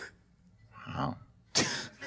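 A short lull in the talk, then one sharp cough near the end.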